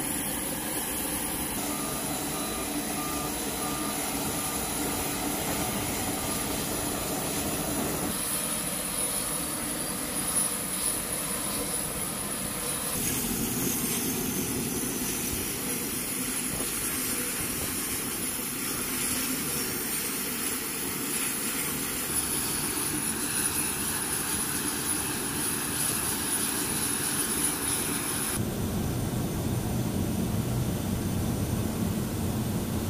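Steady aircraft turbine noise with a constant high whine from a KC-130J Hercules, its tone and balance changing abruptly several times.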